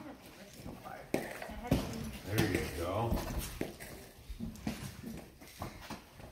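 Sneakers knocking and scuffing against the holds and panels of an indoor climbing wall as a child climbs, a few sharp knocks at irregular intervals, with faint voices in the room.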